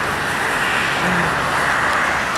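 Road traffic: a car passing by on the road, a steady rush of tyre and engine noise that swells slightly about a second in.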